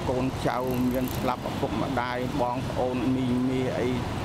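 A man speaking in Khmer over a steady low hum of vehicle traffic.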